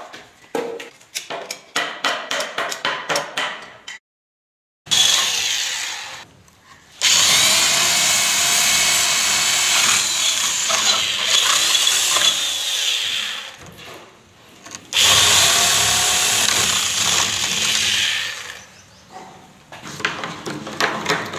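Electric hand drill boring into a wooden door for a lock fitting, running in three bursts with its pitch shifting under load; the middle burst is the longest. It is preceded by a quick series of sharp clicks and taps.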